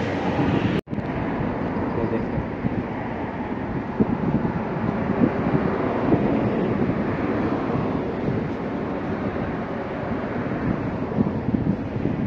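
Wind buffeting a phone microphone outdoors, an uneven rumbling noise throughout, which cuts out for an instant about a second in.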